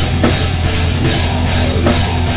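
A rock band playing loud heavy rock, heard from right at the drum kit: drums and crashing cymbals up front over a dense, steady low end. Two sharp hits stand out, just after the start and near the end.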